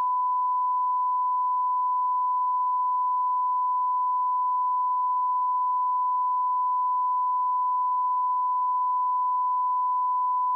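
Broadcast test tone, the reference tone that goes with colour bars, sounding as one steady, unbroken pitch. It signals that the television channel is off air for technical maintenance.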